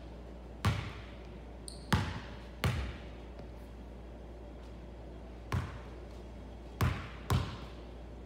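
Basketball bouncing on a hardwood gym floor: six sharp bounces with uneven gaps, some in close pairs, each ringing briefly in the large gym.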